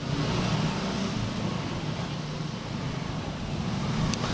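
Steady outdoor street noise with a low rumble of road traffic.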